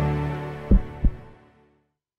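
The end of a logo intro music sting: a sustained low chord fading out, with two short deep thumps about a third of a second apart, a little under a second in.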